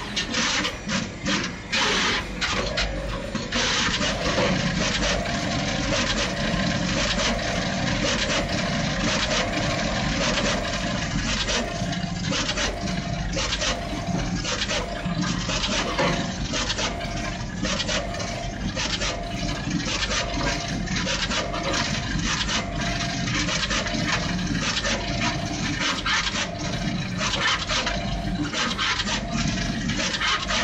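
Juki pick-and-place machine running at full speed: its placement head moving and clicking rapidly over a steady rushing noise, with a short whir repeating about once a second. It is stop-start for the first few seconds, then continuous. The sound is loud and distorted by clipping.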